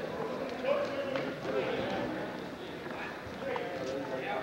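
Indistinct voices of people around a wrestling mat, with a few light thuds of wrestlers' feet on the mat.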